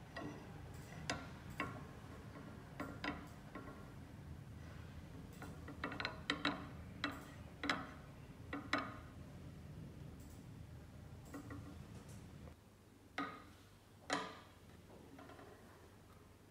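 Scattered light clicks and ticks from a bottle cap torque tester's clamp being adjusted: a knurled knob turned on a threaded steel rod to close the grip posts on a plastic water bottle. A low steady hum runs under it and stops about twelve seconds in.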